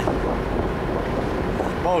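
Wind buffeting the microphone on the deck of a moving ship: a loud, steady rumbling noise with a faint steady hum beneath it.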